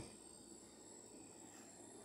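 Near silence: outdoor background with a faint, steady high-pitched tone.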